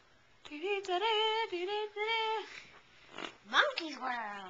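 A child's voice singing a few wordless held notes in a wavering sing-song, then a quick rising whoop near the end.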